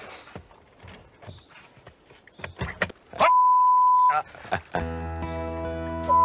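A few faint clicks and knocks, then about three seconds in a loud, steady, pure electronic beep held for nearly a second, the kind of tone used to bleep out a word. Music with long held chords comes in near the end.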